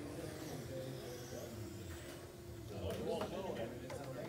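Indistinct voices in a large hall, with a man's voice clearest about three seconds in. Over them runs the faint, rising and falling high whine of electric RC touring cars racing on the carpet track.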